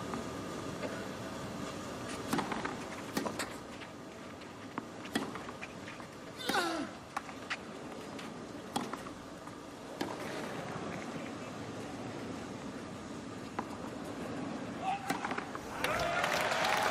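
Tennis rally on clay: sharp racket-on-ball strikes about a second apart over a steady crowd hush, with one short voice cry about six and a half seconds in. Crowd noise swells near the end as the point finishes.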